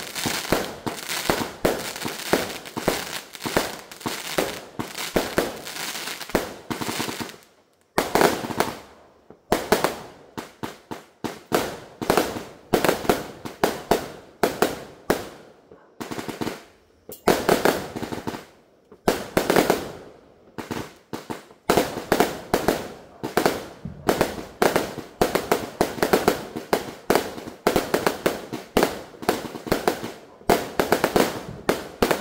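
Multi-shot consumer firework cake firing a long barrage of aerial shells: rapid sharp bangs of launches and bursts, broken by a few brief pauses.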